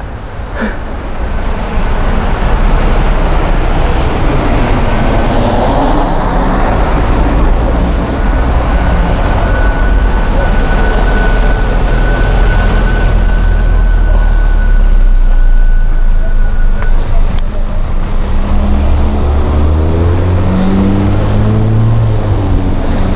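Low, steady rumble of a motor vehicle engine running close by, with a thin steady whine through the middle that stops about two-thirds of the way in. Near the end a pitched engine note rises and shifts as the vehicle moves.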